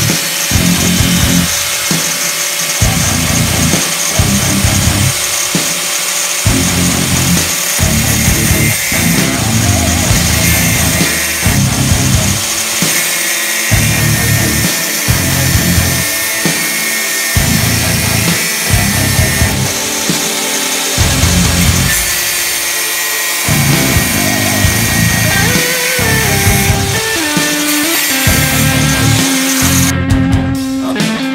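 Angle grinder cutting through a stepper motor's shaft, with background music with a steady beat over it.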